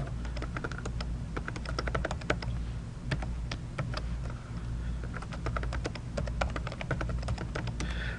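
Typing on a computer keyboard: a quick, irregular run of key clicks as an email address is entered, with a low steady hum underneath.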